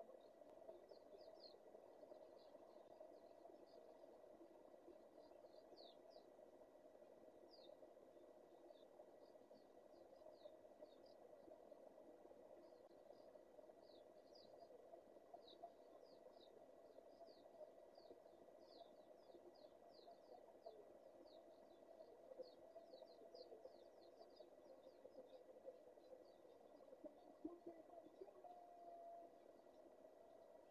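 Near silence: faint, quick high chirps of distant birds, many short falling notes scattered throughout, over a low steady hum and a thin steady tone.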